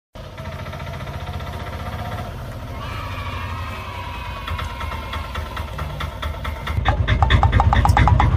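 Auto rickshaw engine running as the rickshaw comes up and slows, its pitch sinking. Near the end it becomes much louder and closer.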